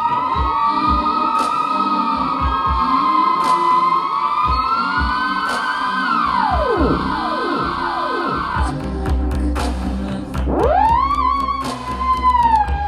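Theremin playing several overlapping wavering tones with vibrato, which swoop downward one after another about six seconds in. About two seconds later a beat with a low bass pulse and clicking percussion comes in, and the theremin glides back up and holds a note.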